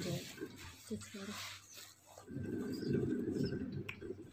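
Indistinct, muffled low voices with faint rustling from handling a wrapped book.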